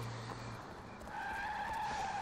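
A car driving off fast, a low engine hum giving way about a second in to a steady, high tyre squeal.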